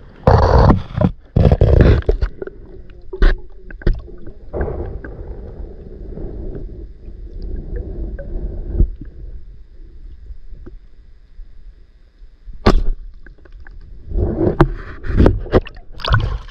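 River water heard through a camera microphone held underwater: a muffled rumble with sloshing, loud splashy surges as the camera goes under in the first two seconds and as it breaks the surface again near the end, and a few sharp knocks in between.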